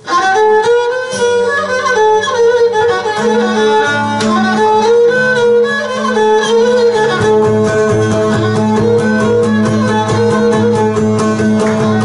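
Live Cretan folk music: a bowed Cretan lyra plays an ornamented melody over strummed laouto accompaniment, starting suddenly, with low notes joining about a second in.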